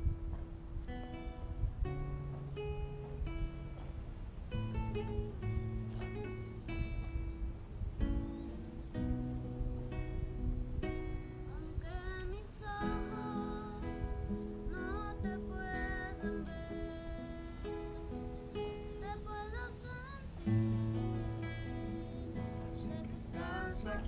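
Nylon-string classical guitar fingerpicking the instrumental introduction to a slow song, one note after another in a steady flowing pattern.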